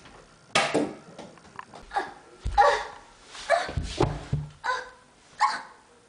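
A dog barking, about seven short barks spaced under a second apart, with a couple of heavy thumps in the middle.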